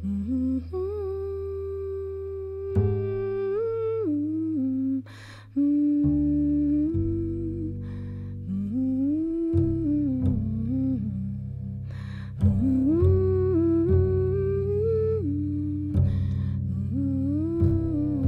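Upright double bass plucked in slow, sustained low notes under a woman's wordless hummed melody that glides between pitches. The bass note changes every few seconds.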